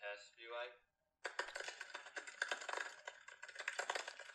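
Rapid typing on a laptop keyboard: a quick, irregular run of key clicks that starts just over a second in, after a brief spoken word.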